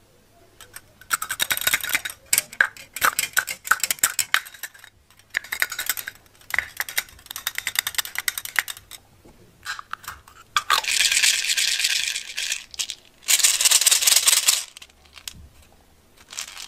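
Small plastic beads rattling and clicking in a metal muffin tin as they are stirred and a toy figure is pushed through them, first as a quick run of clicks, then two longer stretches of continuous rattling in the second half.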